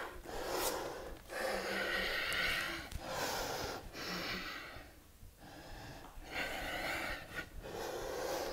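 A woman breathing hard in a series of long, audible breaths, in and out, while she catches her breath after high-intensity interval exercise.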